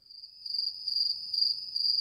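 Chirping crickets, a steady high-pitched trill: the comic "crickets" sound effect for an awkward silence.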